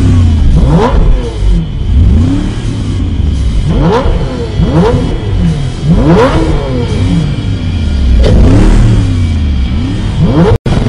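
Two sports-car engines revved again and again while standing still, their pitch rising and falling in quick overlapping sweeps about twice a second over a steady idle drone.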